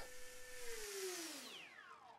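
Dynam Hawksky V2's electric pusher motor and propeller spinning down from full throttle: a steady whine for about half a second, then falling steadily in pitch and fading as the throttle is closed.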